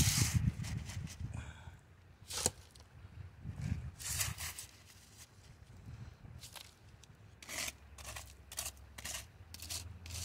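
A small hand scoop digging into wet riverbank gravel: irregular scrapes and crunches of stones, several in quick succession near the end, over a steady low rumble.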